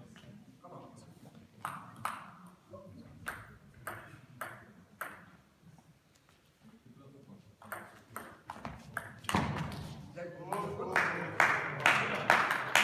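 A table tennis ball clicking sharply off bats and table in a rally, a stroke every half second or so. About nine seconds in, spectators break into applause as the point ends.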